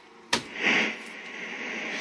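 A sharp click as the Play key of a 1984 JC Penney 5053 VCR is pressed, followed by a brief swell of mechanism noise as the machine goes into play, settling into a steady hiss. The owner suspects the machine needs new belts and idlers.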